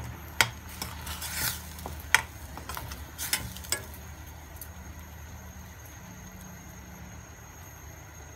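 A metal spoon stirring rice-flour dumplings in a steel pan, giving sharp clinks and short scrapes against the pan in the first four seconds. A steady low hum continues underneath, and it is all that remains after the stirring stops.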